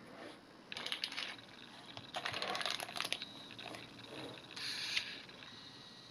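Small clear plastic bag crinkling as it is handled, in three short bursts of crackling.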